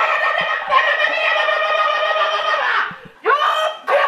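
A woman's voice through a handheld megaphone: one long drawn-out call lasting almost three seconds, then a shorter call near the end.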